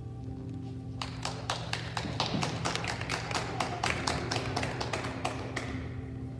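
Scattered hand clapping from a small congregation, starting about a second in and dying away near the end, over soft sustained keyboard music.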